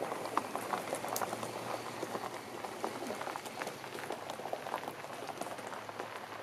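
Tyres of a 1963 Ford Thunderbird crunching over loose gravel as the car rolls along, a dense crackle of small stones popping and grinding.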